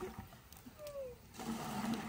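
Hot water poured from a plastic scoop into a plastic bucket, a steady splashing hiss starting about a second and a half in. Before it there is a short falling whistle.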